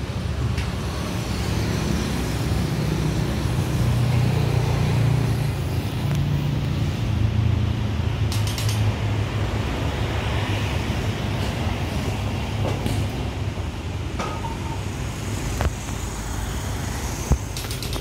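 A vehicle engine running steadily with a low hum, with a couple of brief knocks near the end.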